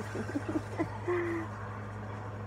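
A woman's short soft laugh, then a brief held vocal note, over a steady low hum.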